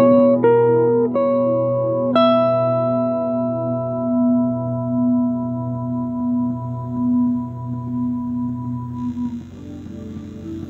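Les Paul-style electric guitar: four picked notes in the first two seconds, the last one left to ring and fade, over a low held note that swells and fades. The sound ends about nine seconds in.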